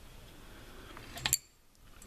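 A couple of light, sharp clicks from a metal table lamp's base and tube being handled, a little past a second in, over faint room noise.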